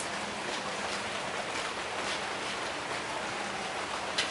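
Nitric acid fizzing as it reacts with metal: a steady hiss with faint crackles, and a faint low hum underneath.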